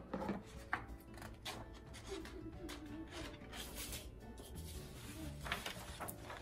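Scissors snipping black construction paper a few times, quietly, over faint background music.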